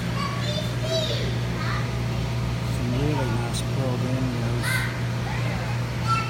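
Indistinct background voices of other people talking, in scattered snatches, over a steady low hum.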